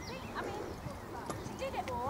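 Horse's hooves striking a sand arena surface in trot, a few soft irregular strikes.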